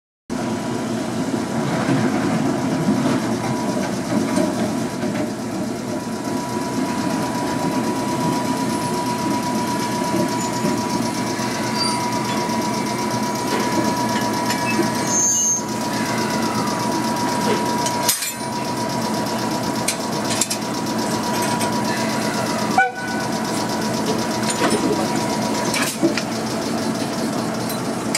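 Ōigawa Railway ED90 rack electric locomotive standing close by, running with a steady hum and a thin, steady high whine. A few sharp metallic clanks come about two-thirds of the way through, as it is coupled to the passenger car.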